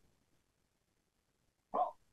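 Near silence, then near the end one brief voiced sound, a short syllable from a man starting to reply.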